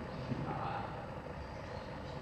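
Steady low background rumble of room noise in a gym hall, with faint indistinct voices.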